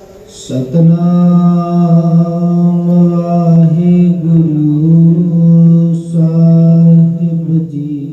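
A man chanting an invocation in long, drawn-out phrases held on one nearly steady pitch, two phrases in all, the second starting about six seconds in.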